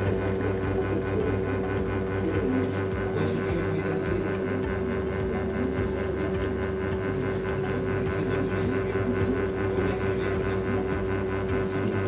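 Espresso machine pump running with a steady hum and a constant tone while espresso shots are being pulled into glass cups.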